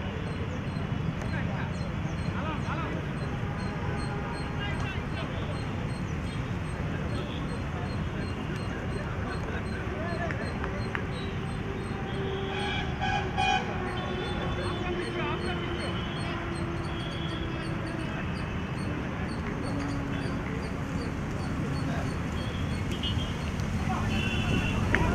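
Open-air ambience at a cricket ground: steady low background noise with faint distant voices of players and spectators, and a brief tone about halfway through.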